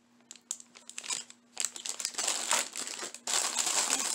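Plastic packaging crinkling as it is handled: a few light rustles at first, then continuous crinkling from about halfway through, louder near the end.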